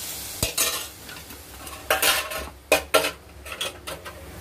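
Steel ladle stirring dill bhaji in a metal pan on a gas stove: a few sharp scrapes and clinks of metal on metal, about half a second in and again around two and three seconds, over a faint sizzle from the pan.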